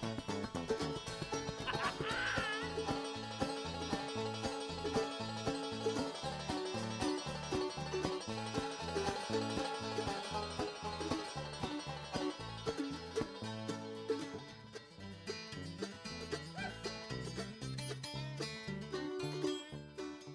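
Bluegrass band playing live: an upright bass walks a steady line under banjo picking. The music thins and quiets over the last few seconds.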